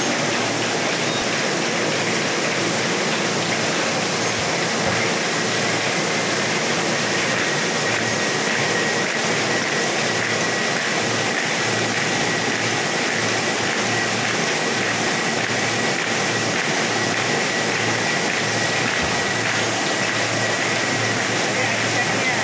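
Buckle-plate paper folding machine running steadily, rollers and delivery belt carrying folded sheets, with a faint steady high whine that comes in about six seconds in.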